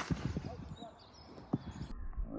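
Outdoor ambience with faint distant voices. There is a sharp click right at the start and another short sharp knock about a second and a half in.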